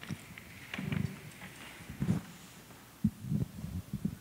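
Handheld microphone being handled and passed: a few irregular low bumps and rustles, with faint clicks.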